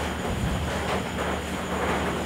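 Steady low background rumble and hum, with a faint high whine above it.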